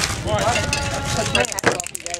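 Sideline voices talking and calling out, with one voice holding a drawn-out call for most of a second near the middle, over a low rumble of wind on the microphone.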